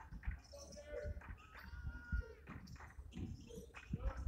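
Basketball shoes squeaking in short, high squeals on the hardwood gym floor, over scattered thuds from play on the court.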